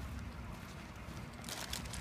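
Low, uneven rumble of a light breeze on a phone microphone outdoors, with faint crackly rustling starting about one and a half seconds in.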